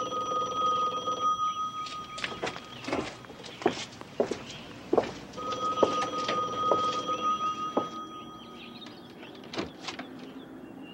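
Telephone ringing: one ring ends about two seconds in and a second long ring follows from about five to eight seconds in. Sharp knocks and clicks fall between the rings and once near the end.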